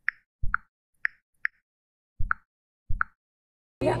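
Typing sound effect for an animated title: six single key clicks at uneven spacing, three of them with a heavier, deeper thump. A woman's voice starts just before the end.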